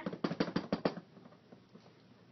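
A quick run of about eight light clicks and knocks in under a second, then quiet: plastic dolls knocking against a plastic toy dollhouse as they are handled.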